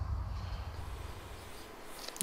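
Wind rumble on the microphone outdoors, deep and steady, fading away over the first second and a half and leaving a faint open-air hiss.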